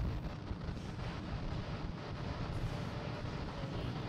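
Steady rushing noise from the launch pad microphone, with wind on the microphone, while the fuelled rocket waits on the pad.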